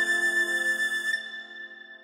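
Background music: a single held, flute-like chord that fades slowly away.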